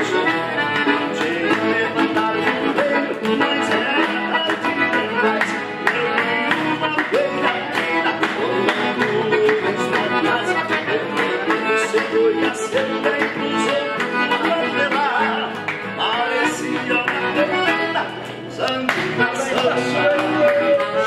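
Accordion playing a lively gaúcho dance tune, backed by strummed acoustic guitar and rhythmic hand clapping.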